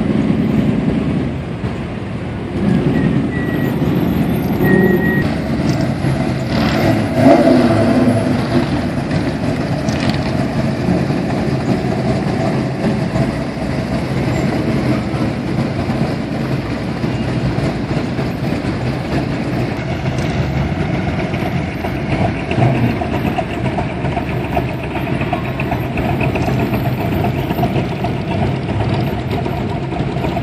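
A procession of classic cars and hot rods driving slowly past one after another, their engines running steadily. The loudest engine swell comes about seven seconds in.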